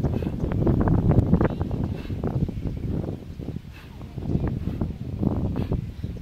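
Wind buffeting the camera microphone: a loud, irregular low rumble that rises and falls in gusts.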